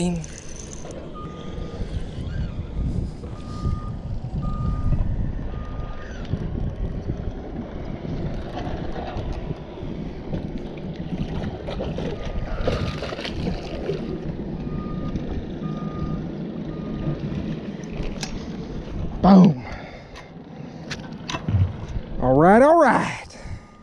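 Steady wind and water noise as a hooked largemouth bass is played in on a spinning rod. Two runs of short electronic beeps at one pitch sound over it, and a short, loud vocal exclamation comes near the end.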